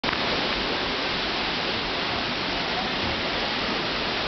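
Steady rush of a waterfall pouring down a rocky canyon.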